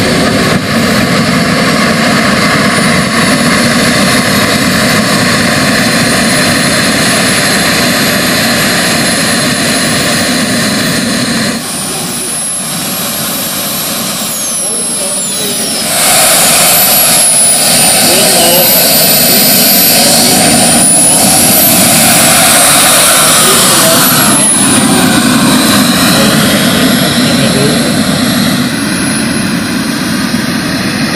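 Twin JetCat P80 model jet turbines of a large RC Bombardier CRJ 200 running on the ground with a loud, steady whine. In the second half the high whine rises and falls in pitch as the throttle is moved.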